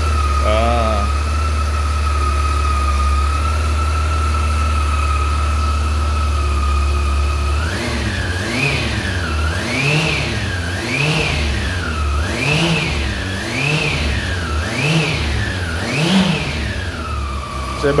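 Honda CB400 Super Four Hyper VTEC Revo's inline four-cylinder engine idling steadily, then revved about seven times in quick succession, each blip of the throttle rising and falling with a howl, before settling back to idle near the end.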